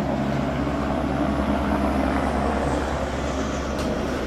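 Single-engine helicopter hovering as it lifts off, its rotor and turbine a steady low drone that breaks off near the end.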